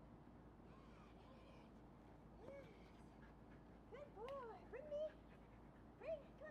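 Short, arching animal calls over faint background hiss: one about two and a half seconds in, then several in quick succession around four to five seconds in.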